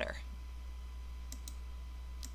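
Steady low electrical hum with a faint high steady tone, and two quick computer clicks close together about a second and a half in.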